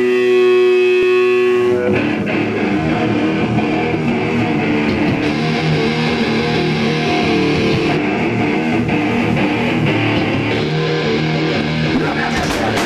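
Live electric guitar and bass opening a rock song. A chord is held ringing for about two seconds, then the guitars launch into a dense riff, and drums come in right at the end.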